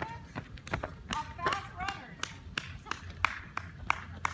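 A runner's footsteps slapping on asphalt, about three strides a second, growing louder as the runner approaches.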